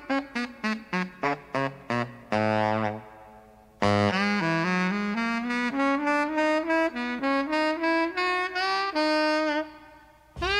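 Saxophone playing an unaccompanied jazz line: a quick run of short, detached notes, a brief pause about three seconds in, then longer, connected notes climbing gradually in pitch with small bends.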